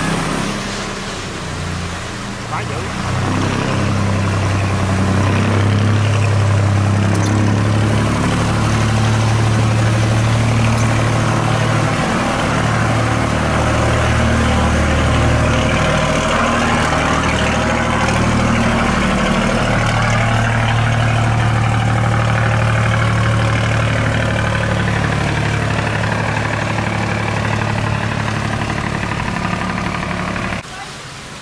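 Boat engine running steadily with a low hum, over water rushing through a sluice gate.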